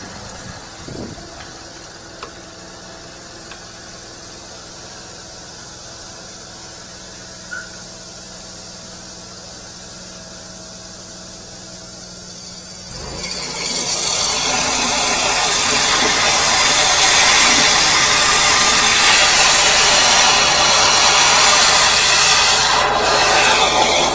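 High-pressure drain jetter: its engine runs steadily, then about thirteen seconds in the jet is opened and water under pressure sprays down the drain pipe with a loud, steady rushing hiss, jetting the blocked sewer line clear.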